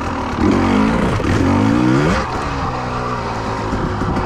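2020 Husqvarna TE300i, a fuel-injected 300 cc two-stroke single, revving hard as it rides over a log obstacle. It gives a short blip about half a second in, then a long climb in pitch that breaks off at about two seconds, then runs lower and steadier.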